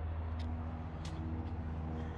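Steady low mechanical hum, like a motor running somewhere off-screen, with a couple of faint clicks.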